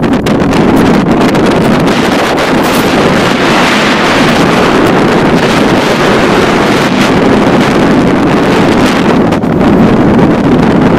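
Strong wind buffeting a camera microphone high up on an open structure, a loud steady rush with a few crackles at the start and near the end.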